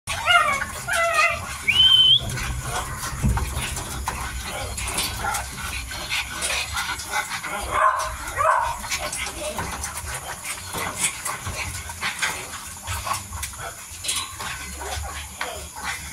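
Mini dachshund puppies whining in high, sliding calls for the first two seconds or so, with another short whine a little past the middle. Throughout, many small clicks of puppies eating from a bowl: chewing and lapping.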